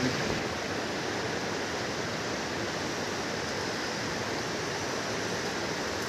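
Shallow mountain river rushing over rocks and boulders close by: a steady, unbroken rush of water.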